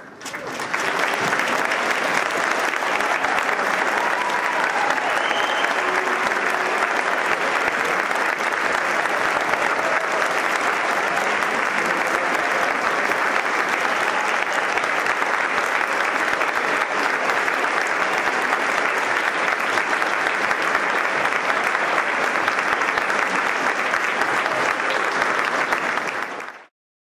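Audience applauding, rising quickly about half a second in and then holding steady.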